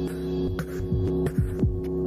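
Electronic music: a low synthesizer chord held steady, with about four electronic kick-drum hits that each drop quickly in pitch.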